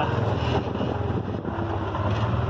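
A vehicle's engine running steadily with a low, even hum, heard from inside its cab.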